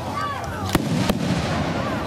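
Aerial firework shells going off in a display: two sharp bangs about a third of a second apart, the first the louder.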